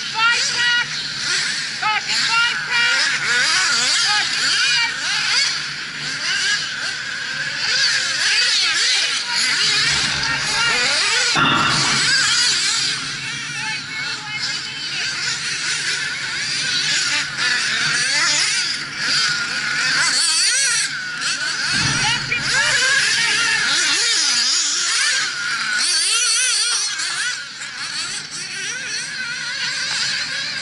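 Several nitro RC buggy engines running at race speed, a high-pitched whine that keeps rising and falling as they rev and back off.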